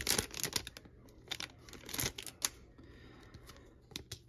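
Foil trading-card pack wrapper crinkling in the hands as it is peeled open and the cards pulled out: a run of short crackles, densest in the first second and again about two seconds in.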